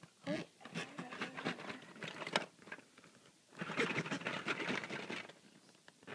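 A brief vocal sound at the start, then quick irregular rustling and scratching against fabric, densest for over a second past the middle.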